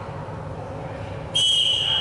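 Referee's whistle blown in one long, steady blast just over a second in, the signal that starts the dodgeball point, over the low hum of a sports hall.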